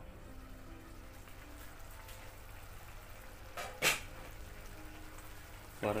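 A pan of dal with snake gourd and carrot simmering: a faint, steady crackle of bubbling. A single sharp clink cuts in a little before four seconds.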